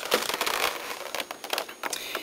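Clear plastic blister packaging crackling and crinkling as it is handled, a run of small irregular clicks.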